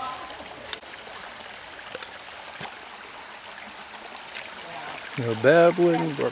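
Small rocky woodland stream babbling steadily over stones. Near the end a person's voice cuts in loudly for about a second.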